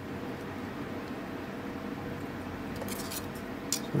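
Steady low room noise with a faint hum, and a few light metallic clicks about three seconds in and again near the end as a metal pick blank is handled in a hand-held lever hole punch.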